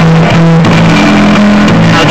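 Street busker's guitar playing a blues line with held notes, loud on the recording.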